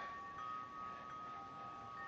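Wind chimes ringing softly: a few long, steady high tones that overlap, a new one coming in about half a second in.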